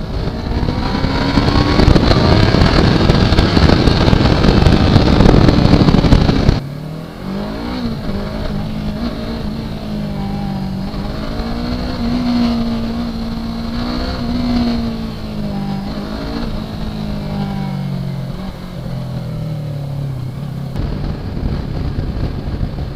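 Yamaha R3's 321 cc parallel-twin engine pulling loud and hard for about six and a half seconds, its pitch climbing slightly. Then the level drops suddenly and the engine runs on at lower revs, its pitch rising and falling with the throttle.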